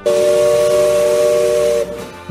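The Mark Twain Riverboat's steam whistle blowing one steady blast of nearly two seconds, a chord of three tones over a hiss of steam, cut off sharply.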